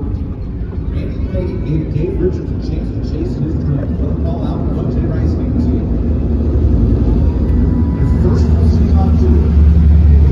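A vehicle running, its low rumble growing louder toward the end, with indistinct voices and crowd noise over it.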